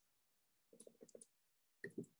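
Faint clicks of keys being pressed: a quick run of four or five about a second in, then two louder presses near the end, against near silence.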